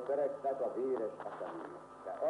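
A voice speaking in a language other than Spanish, from an old archival recording with a thin, narrow sound. It drops off briefly near the end.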